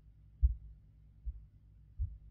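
Low, dull thumps, about one every 0.8 s, over a faint low rumble.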